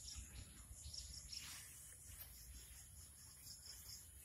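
Near silence with faint, high-pitched insect chirping repeating through it.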